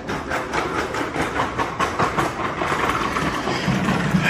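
A large sheet of paper rustling and crackling as it is unfolded and shaken out by hand, in a quick, irregular run of crinkles.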